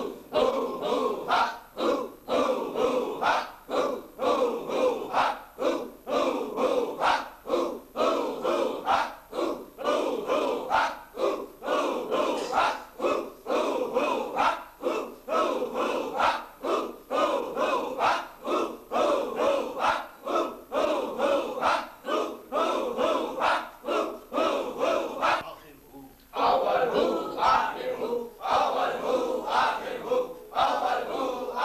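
A group of men chanting zikr in unison, repeating a short devotional phrase over and over in a fast, steady rhythm. The chanting breaks off briefly about four seconds before the end, then resumes.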